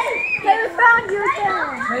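Children's voices chattering and calling out, high-pitched and without clear words.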